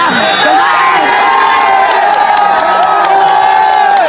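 Crowd of football spectators cheering and shouting in long, held calls as a free kick is struck toward goal.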